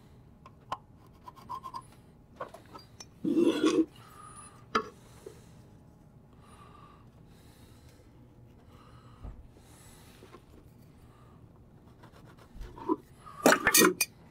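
Small scratching and tapping of a pencil and an awl marking screw holes through a metal latch plate on a wooden box lid. There are scattered light clicks, one louder scrape about three and a half seconds in, and a quick cluster of knocks near the end.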